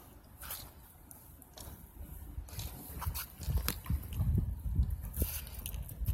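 Wind buffeting a phone microphone outdoors, with a few clicks of handling noise as the phone is turned; the low rumbling gusts grow stronger about halfway through.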